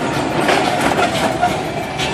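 Street traffic: car engines idling and cars rolling slowly past, a steady mechanical din.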